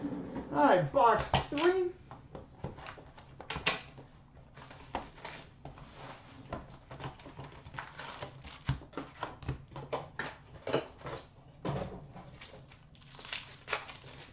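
Trading-card pack wrappers being torn open and crinkled by hand, with the cards inside being handled in a quick, irregular run of small clicks and rustles. A brief voice sounds about a second in.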